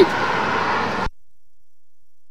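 Steady background noise, a hiss with a low rumble, that cuts off abruptly about a second in, leaving dead silence.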